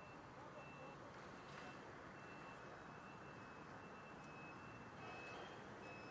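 Faint vehicle backup alarm: a high beep repeated about twice a second, over steady street hiss.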